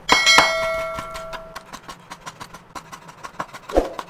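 A bell 'ding' sound effect rings once at the start and fades over about a second and a half. Under and after it, a knife chops raw shrimp on a cutting board in quick, repeated strokes, with one heavier thud near the end.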